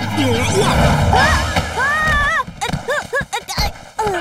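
Cartoon soundtrack: a character laughing and crying out over a low rushing rumble, then a quick run of short rising squeaky sound effects as the penguin is knocked flat by the thrown ball.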